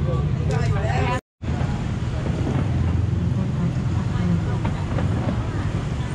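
Voices chatting for about a second, then an abrupt cut to a steady low rumble of street traffic with faint voices in the background.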